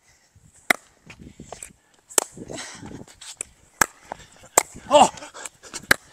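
Pickleball rally: a series of sharp pops as the plastic pickleball is struck by the paddles, about five hits spaced roughly a second or so apart.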